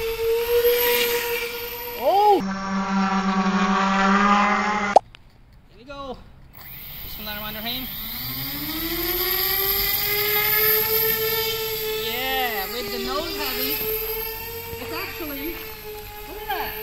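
Electric motors and propellers of a small RC bicopter whining steadily in flight. After a short break the whine climbs in pitch as the motors spool up, then swoops up and down a few times as the throttle is worked.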